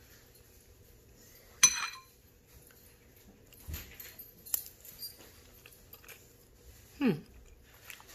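A metal spoon clinks once against a ceramic bowl of stew, with a brief ringing, then faint small mouth and chewing noises as the stew is tasted, and a short falling 'hmm' near the end.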